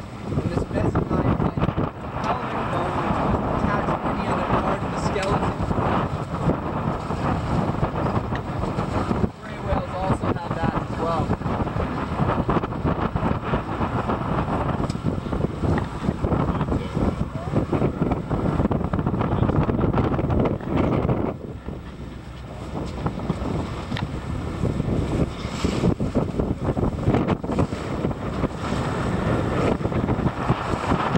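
Heavy wind buffeting the microphone on a small boat moving over choppy water, with the boat's motor running under it; the roar eases briefly about two-thirds of the way through.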